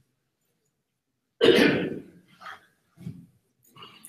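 A person coughing once, loudly and suddenly, about a second and a half in, followed by a few fainter short sounds.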